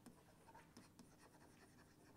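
Very faint scratching and light tapping of a stylus writing on a screen, barely above near silence.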